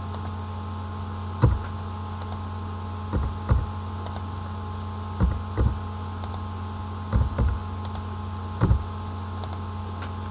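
Computer keyboard keys pressed in short groups of two or three, with pauses of about a second between groups, over a steady low electrical hum.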